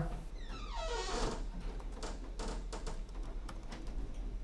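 Computer keyboard keystrokes: a scatter of separate clicks through the second half as code is typed. A faint murmur of voice comes about a second in.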